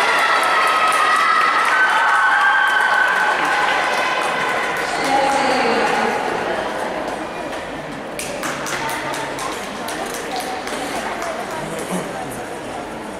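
Figure-skating program music dies away on its last held notes in the first few seconds. About eight seconds in, scattered applause from a small ice-rink audience starts up.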